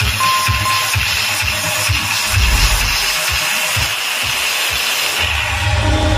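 Very loud electronic dance music through a huge DJ speaker rig under sound test, pounding bass beats with a dense distorted top end. About five seconds in, a continuous deep bass comes in and holds.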